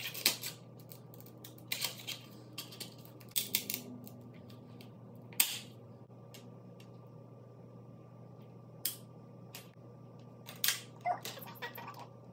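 Plastic eyeshadow palettes being handled and set down on a stone countertop: scattered sharp clicks and taps, a few close together, the loudest about five seconds in. Under them runs a faint steady hum.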